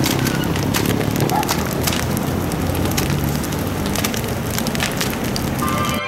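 Fire crackling: many sharp pops over a steady noise.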